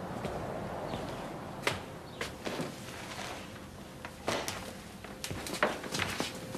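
Footsteps on a hard kitchen floor: a man walking away, heard as a series of short, irregular knocks and taps that begin a little under two seconds in.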